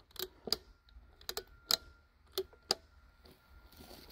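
Circuit breakers in a breaker panel being switched on one after another: a series of about seven sharp clicks over three seconds, energising the hot-plate load of an 80-amp test circuit. A faint steady tone comes in after about a second.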